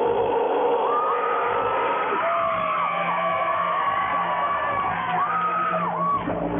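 Electric guitar feedback in a pause of a live heavy metal set: long tones sliding up and down over a low steady amplifier drone, with the drums stopped.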